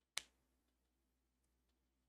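Near silence with a single sharp click just after the start, fading out quickly, then faint room tone.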